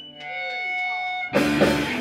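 A punk rock band starting a song live: held and sliding electric guitar notes ring alone at first, then drums, bass and distorted guitars come in together suddenly about a second and a bit in.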